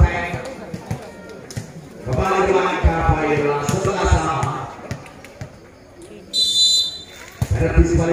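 A referee's whistle gives one short blast about six seconds in, the signal to serve in a volleyball match. Before it a loud voice carries over the court, with low thuds.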